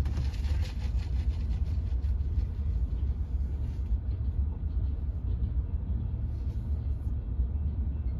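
Freight train of covered hopper cars rolling past, a steady low rumble with faint wheel clatter, heard from inside a car. The higher clatter thins out about halfway through, leaving the low rumble.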